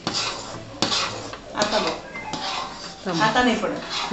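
Steel ladle scraping and stirring a thick, stiff chana dal and sugar paste in an aluminium kadhai, in a few separate strokes against the pan. The paste is being cooked down until it clings to the ladle.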